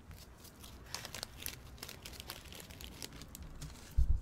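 Faint crinkling and rustling as a small plastic bag of dried herbs is handled with nitrile-gloved hands, with scattered small crackles.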